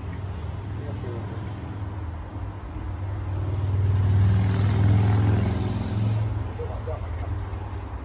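A motor vehicle's engine passing by, a low hum that swells to its loudest about four to five seconds in and then fades away.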